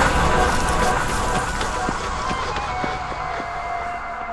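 Electronic dance music fading out: a sustained chord over a low bass slowly dies away.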